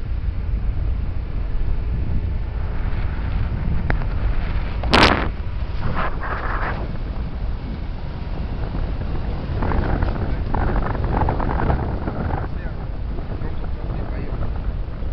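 Vehicle driving on a rough dirt road: a steady low rumble from the engine and tyres, with wind buffeting the microphone. A single sharp knock comes about five seconds in.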